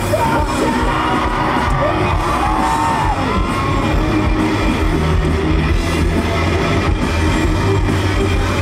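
Live rock band playing loudly on stage, with electric bass, guitar and drums and some shouted singing over the top.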